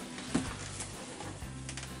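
Faint background music, with one soft knock about a third of a second in.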